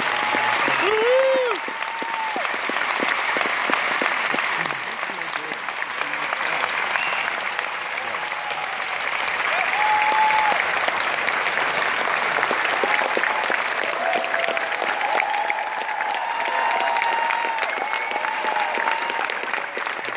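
A theatre audience applauding steadily, with a few voices calling out from the crowd.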